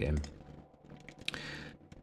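A few faint clicks of a computer keyboard and mouse as the music software is operated.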